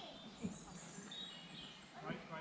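Faint woodland birdsong: a high, thin call followed by a few short whistles, with a soft low thump about half a second in.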